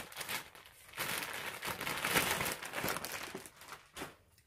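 Clear plastic garment bags crinkling and rustling as they are handled and lifted out of a cardboard box, in irregular stretches that die away just before the end.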